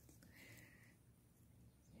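Near silence, with only a faint, brief high-pitched sound about half a second in.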